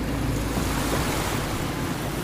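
Steady rush of wind on the microphone over shallow seawater lapping at a rocky shore.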